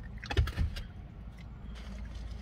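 A brief clatter of knocks, with one low thump about half a second in, as things are handled in a car's cabin. A steady low car hum runs underneath.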